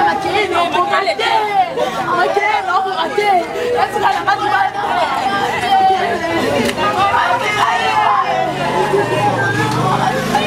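Several women shouting and arguing over one another, their voices overlapping without a break, with street chatter behind.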